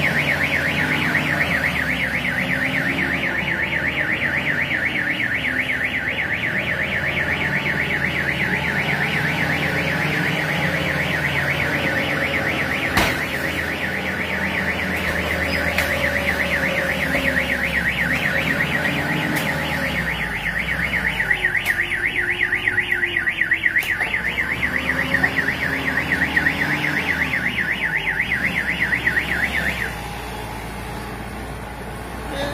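Vehicle car alarm sounding: a fast, steady electronic warble that starts abruptly and cuts off abruptly, set off as a forklift pushes and lifts the pickup truck. A forklift engine runs underneath.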